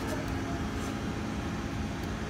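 Blowtorch flame running steadily against a magnesium-oxide board facer, over a steady low hum.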